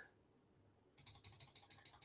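Near silence for about a second, then a quick run of faint clicks. These are the sounds of working the computer's controls to zoom in the browser.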